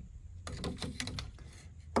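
Faint handling noise from the plastic front cover of a Bambu Lab X1-Carbon 3D printer's toolhead being pulled off: a few light clicks and rubs, with a sharper click near the end.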